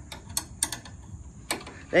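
A few sharp metallic clicks, irregularly spaced, from a cordless ratchet and socket being worked by hand on the studs of an ATV's rear wheel hub.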